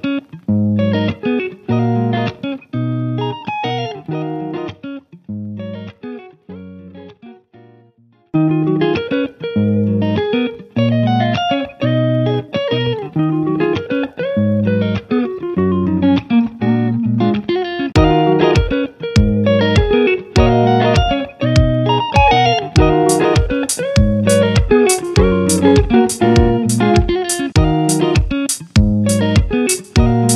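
Instrumental background music with a plucked-string melody. It fades away about a quarter of the way in and starts again. A steady percussive beat joins just past halfway.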